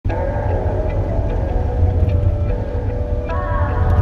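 Steady low engine and road rumble inside a moving vehicle's cabin, with music of long held tones playing over it; the tones move up to a higher chord about three seconds in.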